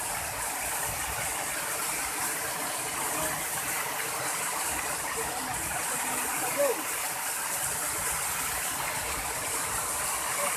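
Tall waterfall splashing down onto rocks, a steady rush of falling water. One short falling call rises above it about two-thirds of the way through.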